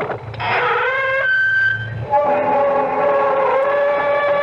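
Long, drawn-out creak of a door swinging open, the radio drama's signature opening sound effect: a squealing hinge that glides upward in pitch, then holds as a loud, slightly wavering tone.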